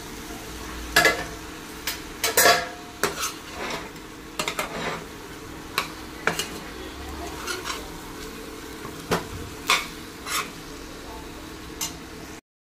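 Chicken leg pieces frying in onion-tomato masala in a stainless steel pan: steady sizzling under repeated clinks and scrapes of a metal spoon on the pan as they are stirred, loudest in the first few seconds as the pieces go in from a steel plate.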